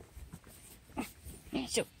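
Quiet fingers scratching a horse's coat, then a short soft vocal sound about halfway through and a spoken word near the end.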